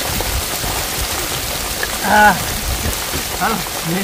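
Steady rain falling on wet ground and puddles, with a person's short call about two seconds in and another brief vocal sound near the end.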